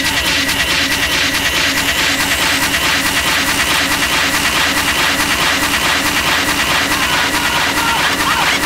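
Live techno: a fast, driving electronic beat with a hissy, dense high end and a repeating short synth note in the low-mid range, while a high rising sweep climbs through the first seconds.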